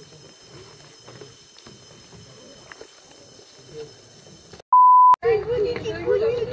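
A single loud, steady electronic beep of one pitch lasting about half a second, near the end, standing out over faint background sound and cut off abruptly.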